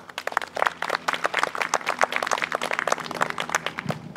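A small group of people applauding, dense hand claps that thin out near the end.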